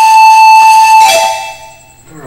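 Soundtrack music sting: one loud, steady, horn-like note that drops to a lower pitch a little after a second in and then fades out.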